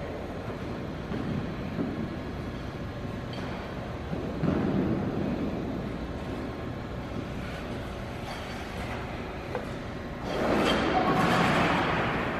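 Figure skate blades gliding and scraping across rink ice, with a louder, longer scrape from about ten seconds in.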